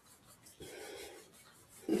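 Palms rubbed briskly together to warm them for self-massage: a faint, dry rubbing, strongest for about a second partway through.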